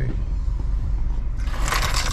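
Low steady rumble inside a stopped car with its engine running, with a brief rustle or scrape about one and a half seconds in.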